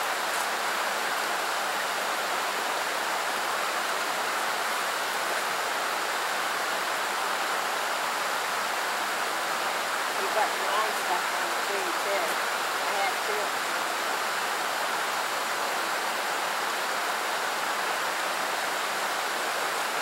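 Shallow creek water flowing over a rocky riffle: a steady, even rush.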